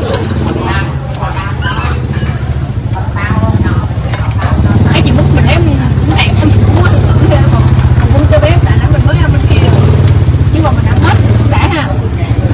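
Motorbike engine running, louder from about four seconds in and falling away just before the end, with people talking over it.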